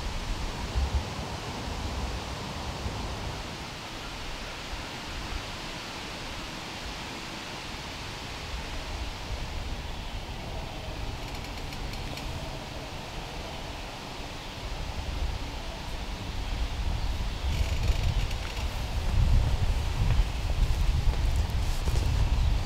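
Wind moving through the leaves of hardwood trees, a steady rustling hiss, with a low rumble of wind buffeting the microphone that grows stronger in the last third.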